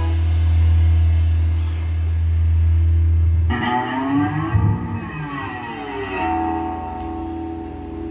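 Electric guitar and bass guitar letting a held chord ring out through their amplifiers at the end of a rock song. The deep bass note drops away about three and a half seconds in, while a guitar note wavers up and down in pitch for a couple of seconds and then settles into a steady held tone.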